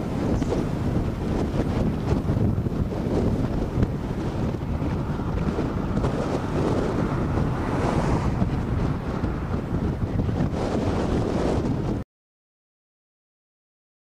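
Strong, gusty wind blowing across the camcorder microphone, a steady rush with small swells. It cuts off suddenly near the end to dead silence.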